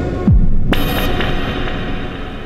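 Electronic tones from a prototype Buchla-format synthesizer module (Orgone Accumulator oscillator with Radio Music sample player) through reverb and delay. A pitch falls steeply into a deep low drop, a bright hissing burst comes about three-quarters of a second in, and the sound then rings on in a slowly fading reverberant wash.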